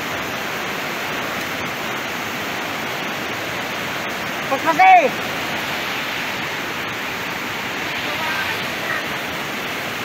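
Brown floodwater of a swollen river rushing steadily, a constant noise with no breaks.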